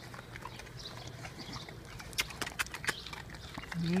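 Small pit bull-type dog chewing and licking a treat, with a scatter of sharp little clicks, most of them between two and three seconds in.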